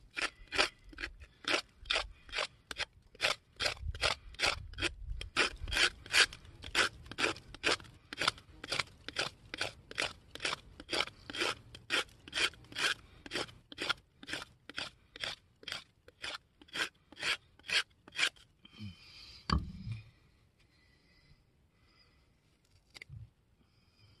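TBS Boar bushcraft knife scraping shavings off a wooden stick, in quick even strokes about two or three a second. The scraping stops about three-quarters of the way through, followed by a single knock.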